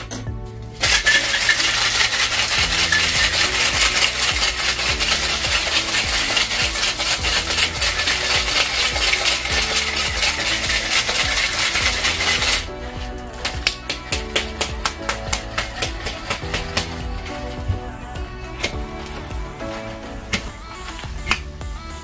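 Ice rattling hard inside a stainless-steel cocktail shaker, shaken fast and evenly for about twelve seconds and then stopping abruptly. A few sharp metal clinks follow. Background music runs throughout.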